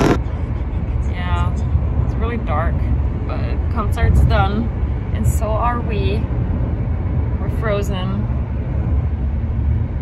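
Several people's voices talking and calling out in the background over a steady low rumble.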